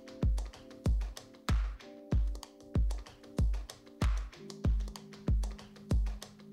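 Background music: a steady kick-drum beat, about ten thumps in six seconds, under held keyboard chords that change every couple of seconds.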